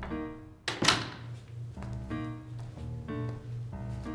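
A hinged wooden door shutting with one loud thunk a little under a second in, over background music with a repeating melodic figure and a pulsing low note.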